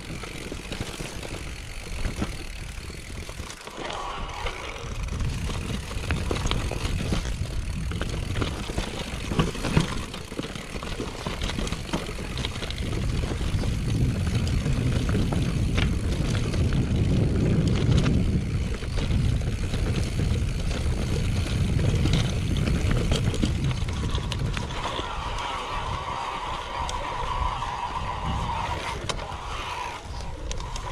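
Mountain bike riding down a grassy, stony ridge trail: wind buffets the microphone while the tyres roll over dirt and stones and the bike rattles and clicks over bumps. The rumble grows louder through the middle as speed builds, and a higher buzz comes in near the end.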